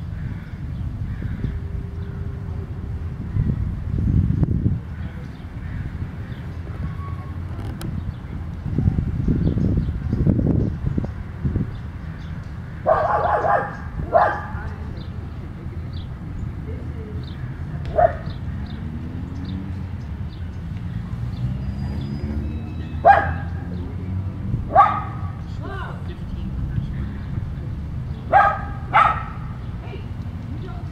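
A dog barking: about seven short barks, some in pairs, through the second half, over a low wind rumble on the microphone.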